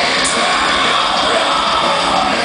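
Heavy metal band playing live through a festival PA: distorted electric guitars, drums and screamed vocals, loud and unbroken.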